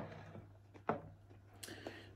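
Quiet pause with a single short click about a second in, and faint low sounds later on.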